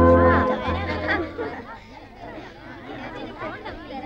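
A keyboard organ's closing held chord fading out over the first second and a half, then many overlapping voices of a crowd chattering indistinctly.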